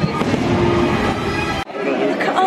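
Fireworks booming over show music, cut off suddenly about one and a half seconds in and replaced by crowd chatter.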